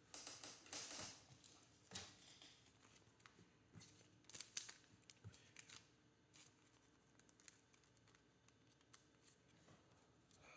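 Faint rustling and scraping of a trading card being handled and slid into a clear plastic sleeve, in a few short bursts, loudest in the first second.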